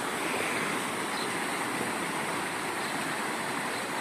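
Muddy floodwater from an overflowing stream rushing over a road, a steady, unbroken rushing noise.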